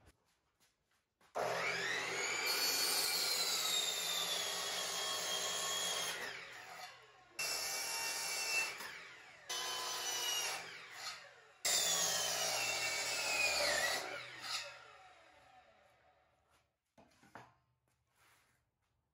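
Porter-Cable sliding compound miter saw running and its blade cutting through a wooden board, in four bursts with short gaps between them. The motor whine falls in pitch as the blade winds down after the last cut, and the sound fades out near the end.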